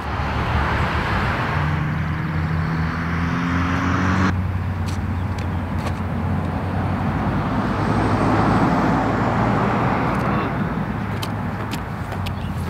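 Steady outdoor road traffic noise, with a vehicle's low engine hum in the first few seconds that cuts off suddenly about four seconds in.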